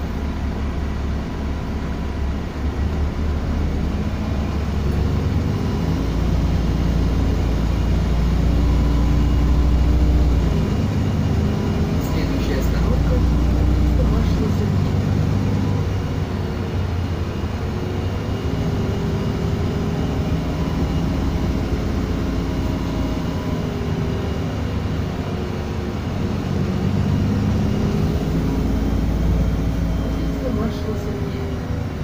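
City bus engine and drivetrain heard from inside the passenger cabin while it drives in traffic, a steady low rumble whose pitch rises and falls as the bus speeds up and slows.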